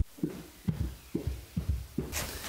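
Soft low thumps at an even beat, about two a second, each with a short falling pitch.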